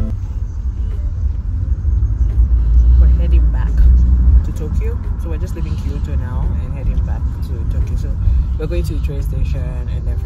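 Low rumble of a moving vehicle heard from inside, heaviest from about three to four and a half seconds in, with faint voices talking in the background.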